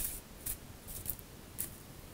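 Deck of oracle cards being shuffled by hand: a few short, soft swishes of card sliding against card, about every half second.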